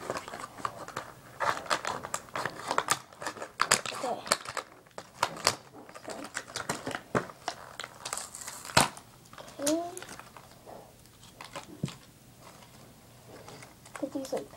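Plastic and cardboard toy packaging being handled and crinkled, with irregular rustles and crackles, thinning out in the last few seconds.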